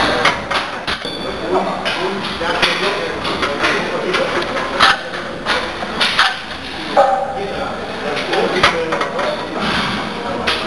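Repeated sharp metallic clanks of a barbell and iron weight plates being handled, with voices in the background.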